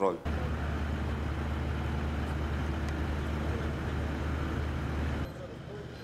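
A steady low rumble with a hiss over it. It stops abruptly about five seconds in and gives way to a quieter outdoor background.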